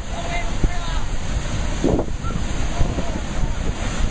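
Heavy ocean surf breaking and churning against rocks, with wind rumbling on the microphone.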